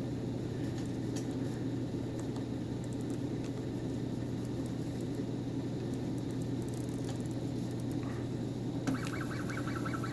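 RepRap Helios SCARA 3D printer: a low steady hum with faint clicks as the knob on its LCD controller is turned and pressed. About a second before the end, a high-pitched whine starts from the printer's stepper motors.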